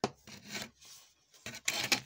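Rubbing, scraping noise of hands handling a car window switch's circuit board and plastic housing, in two bursts; the second, near the end, is louder.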